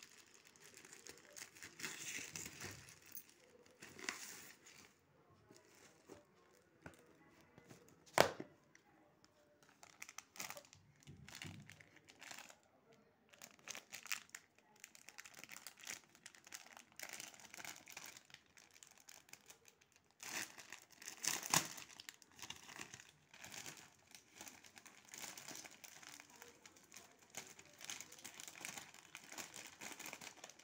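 Plastic courier mailer and plastic wrapping crinkling and tearing as they are handled and pulled open, in irregular rustles. There is a sharp click about eight seconds in, the loudest sound.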